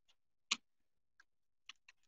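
A few faint, irregular clicks and taps, with one louder knock about half a second in.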